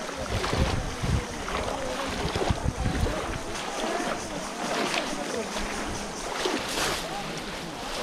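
Water splashing as many people wade through a muddy, flooded pond, with voices calling out across the water. Wind rumbles on the microphone in the first few seconds.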